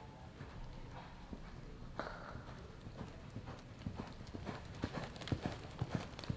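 Horse's hoofbeats on the arena's dirt footing as it lopes, the strikes growing louder and quicker over the last few seconds. A brief falling sound comes about two seconds in.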